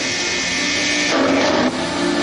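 Steady rushing noise from a documentary film's soundtrack, played over loudspeakers in a large hangar, with a few faint held tones beneath it; it changes abruptly near the end.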